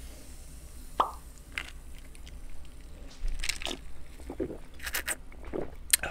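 Close-up sips and gulps of iced soda from a glass, with wet mouth plops and small sharp clicks. A sharp plop comes about a second in, and a cluster of clicks and gulps follows in the second half.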